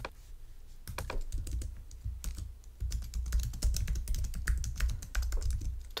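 Typing on a computer keyboard: a run of quick, irregular key clicks with dull low thuds beneath them.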